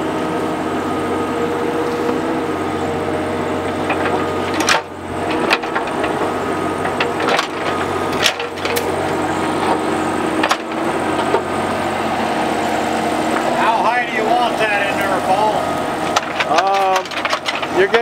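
Kubota mini excavator's diesel engine running steadily under load, with several sharp knocks as the bucket digs and scrapes through rocky soil.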